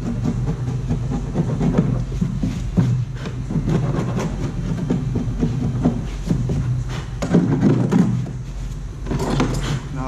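A hand tool scraping the freshly cut plastic edge of a hatch hole in a kayak deck in short, irregular strokes, clearing off the plastic that melted during the jigsaw cut. A steady low hum runs underneath.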